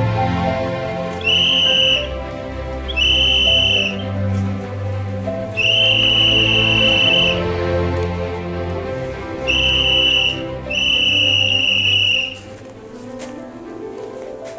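A whistle blown in five steady, high blasts, short and long, over background music with a bass line.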